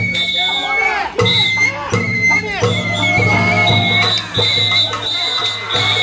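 Sawara-bayashi festival music from a float's band: a high bamboo flute (shinobue) playing long held notes over drums, with voices calling in the crowd.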